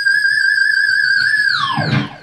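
Overdriven electric guitar through a GuitarHeads Hexbucker humbucker (a high-output, ferrite-magnet PAF-style pickup), holding one high, screaming note with vibrato. About one and a half seconds in, it dives steeply down in pitch.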